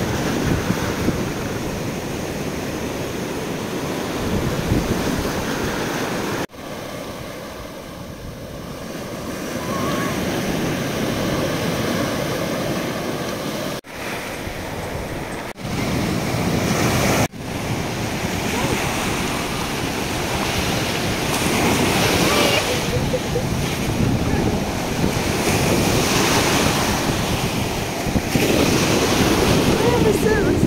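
Sea surf breaking and washing up the shore, with wind rumbling on the microphone. The sound breaks off abruptly a few times where the recording is cut.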